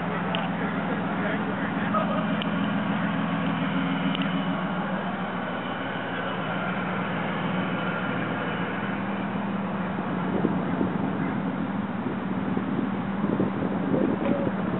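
Car engine running at low revs, a steady low hum, with faint voices near the end.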